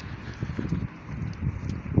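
Footsteps of a person walking, heard close on a handheld phone's microphone as a quick, uneven run of low thuds.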